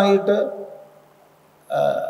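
A man's voice in a lecture: a phrase trails off in the first half second, a pause follows, then a short drawn-out voiced syllable near the end.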